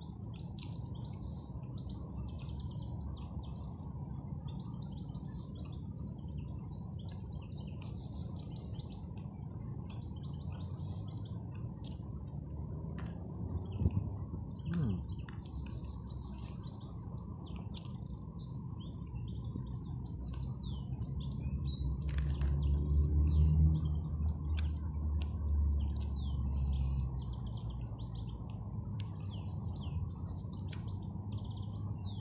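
Small birds chirping and singing in many short, high calls throughout, over a steady low rumble that swells louder about 22 seconds in. A few sharp clicks stand out in the middle and after the 22-second mark.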